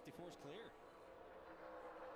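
Faint television race audio: a voice briefly at the start, then the steady drone of a pack of stock car V8 engines running at speed.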